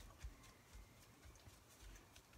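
Near silence, with a few faint soft bumps as hands press and smooth a glued piece of textured paper packaging onto a card blank.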